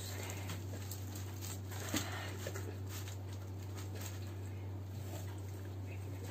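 Pizza slices being pulled apart and lifted out of a cardboard delivery box: soft tearing and handling with scattered light clicks and taps, a sharper tap about two seconds in, over a steady low hum.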